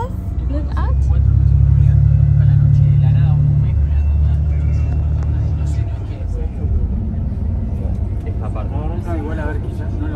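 Bus engine rumbling, heard from inside the passenger cabin. It grows louder about a second in and eases off at about six seconds.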